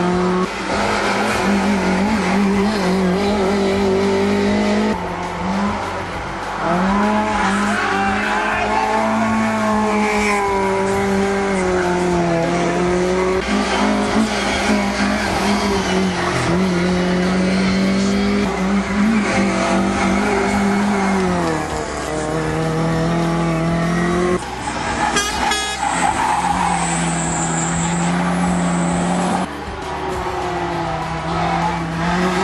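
Racing saloon car engines revving hard as the cars climb a hill-climb course, the note rising through each gear and dropping at the shifts and lifts, with cars passing one after another.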